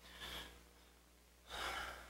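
A man drawing two short breaths, a faint one near the start and a louder one about a second and a half in.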